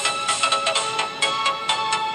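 Background music: a bright, tuneful track with a quick, regular beat.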